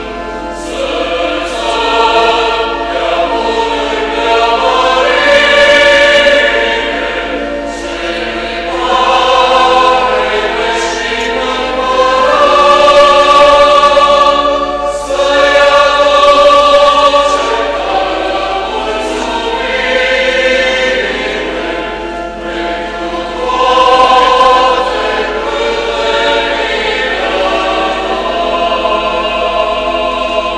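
A choir singing a hymn in long held phrases that swell and fall, with a short break about fifteen seconds in: the entrance hymn as the clergy procession reaches the altar.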